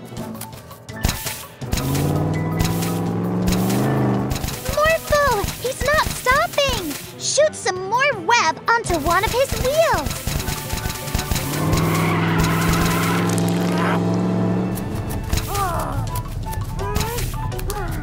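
Children's cartoon soundtrack: music under wordless, sliding character voices, with long held low notes twice.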